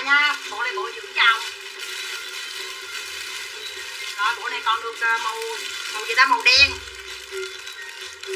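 Plastic garment bags crinkling and rustling as packaged clothes are picked up and handled, with short snatches of voice over it. A low thump comes about two-thirds of the way through.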